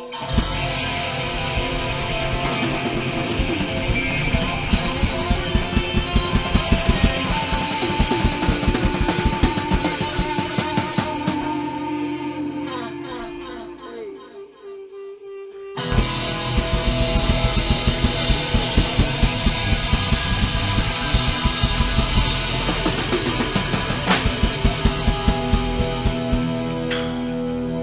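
Live rock band playing loud: electric guitar over a pounding drum kit. Just past halfway the band drops away for a couple of seconds, leaving a single held note, then the full band crashes back in.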